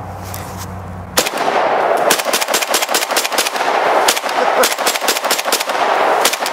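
Arsenal SAM7SF semi-automatic AK rifle in 7.62×39 firing a fast string of shots that starts about a second in, several shots a second.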